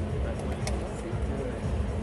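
Outdoor city ambience: a steady low rumble of traffic and wind, with a sharp click from the blitz chess game about two-thirds of a second in.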